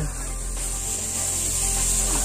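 Dry straw rustling and crackling as it is handled and heaped by hand close to the microphone.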